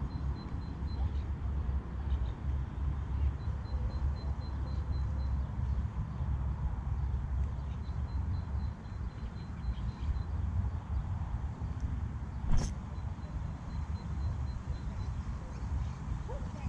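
Spinning reel being cranked in spells, giving a faint, high, ticking whine as the line is retrieved, over a steady low rumble. A single sharp click about two-thirds of the way through.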